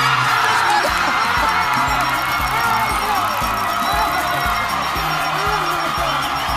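Game-show win music with a steady beat, over a studio audience cheering and whooping and a contestant screaming with joy at winning.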